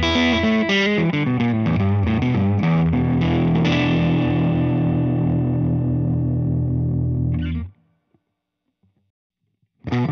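Prestige Troubadour electric guitar played straight into an amp: a run of quick notes and chords, then a chord left to ring for about four seconds. The chord cuts off suddenly about three-quarters of the way in, leaving near silence before the playing starts again at the very end.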